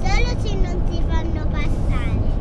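Steady low road and engine rumble inside the cabin of a moving Volkswagen California camper van, with voices over it.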